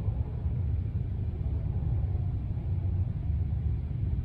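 A steady low rumble of background noise, with no other distinct sound.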